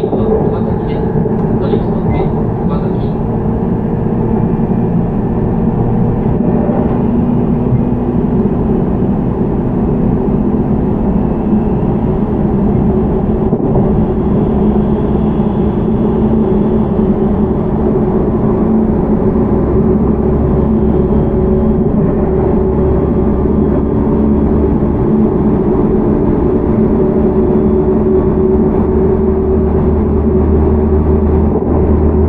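Interior running noise of a JR Central 313 series electric train's motor car (Toshiba IGBT VVVF drive): a steady rumble of wheels on rail with a constant motor hum at a steady speed.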